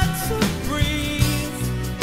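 Rough rock band demo recording playing: drum hits under held notes, some of which slide in pitch.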